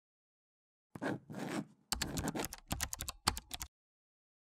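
Keyboard typing sound effect for an on-screen title being typed out. Two short swishing noises come first, then a rapid run of keystroke clicks lasting nearly two seconds.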